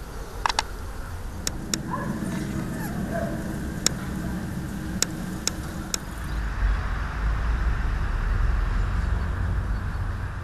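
Outdoor ambience with the low rumble of a motor vehicle, building from the first couple of seconds and heaviest in the second half, with a few sharp clicks scattered through the first six seconds.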